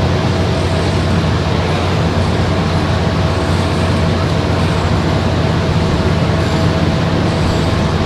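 Steady background noise with no speech: an even hiss with a low electrical hum and a faint steady higher tone, the room tone and sound-system noise of the talk recording.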